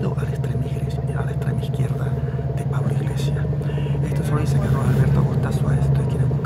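Steady low hum of a moving public transport vehicle heard from inside the passenger cabin, with indistinct voices murmuring over it.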